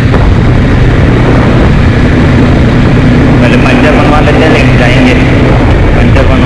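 Heavy wind buffeting on a helmet-mounted action camera's microphone while riding a motorcycle at road speed, with the engine running steadily beneath the wind. The bike is a Bajaj Dominar 400 with a single-cylinder engine.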